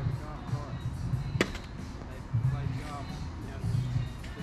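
A mini-golf putter striking a golf ball once, a single sharp click about a second and a half in, over background music and faint voices.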